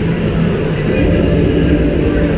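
Steady low rumble of the surroundings of an indoor ice rink during play, with voices mixed in.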